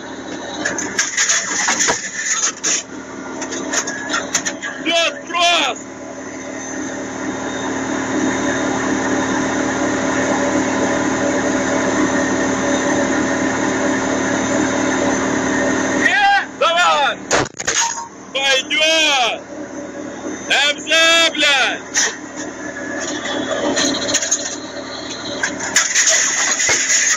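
Steady drone of an armoured vehicle's engine heard from inside the crew compartment, swelling slowly in the middle. Men's voices break in over it during the first few seconds and again in the second half, with one sharp knock among them.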